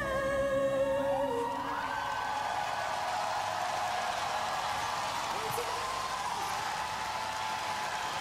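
A singer's long held note closing the song, fading out about a second in, followed by an audience cheering and applauding with a few whoops.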